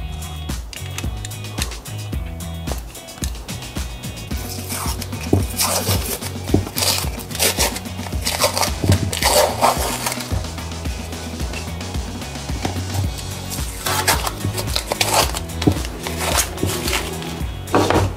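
Masking tape being peeled off glued plywood pen holders in a series of short tearing rips, coming mostly in the middle and again near the end, over background music with a steady bass line.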